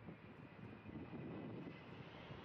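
Faint jet engine noise from an airliner on landing approach, swelling slightly about a second in.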